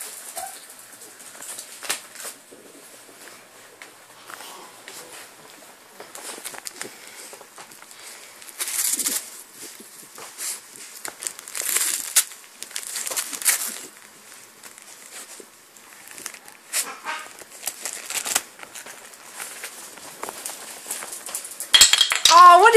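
Wrapping paper crinkling and tearing in short, irregular bursts as a small dog bites and pulls at a wrapped present.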